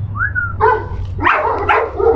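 A dog gives a short high whine that rises and falls, then barks several times in quick succession.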